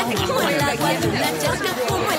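Murmured chatter of several people talking at once, with background music underneath.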